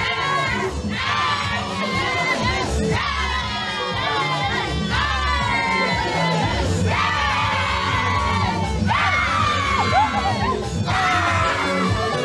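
A crowd of guests cheering and chanting along over loud dance music with a steady bass line. The voices come in repeated phrases about every two seconds.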